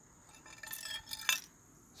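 Rusty scrap metal clinking and scraping on concrete as an old iron handle is picked up from among other corroded pieces, with a sharper clink just past the middle.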